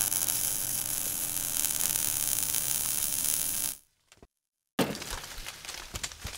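Sound effects for an animated outro logo: a loud, steady, hissing noise lasting about three and a half seconds, a short silence, then a sudden hit followed by crackling.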